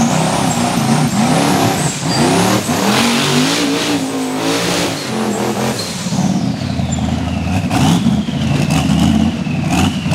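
Rock bouncer buggy's engine revved hard in repeated surges, its pitch rising and falling as it claws up a steep rocky climb. A thin high whine also glides down and back up in pitch.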